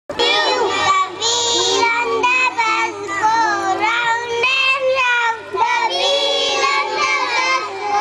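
A young girl singing into a microphone, heard through a PA system, with a steady low hum underneath.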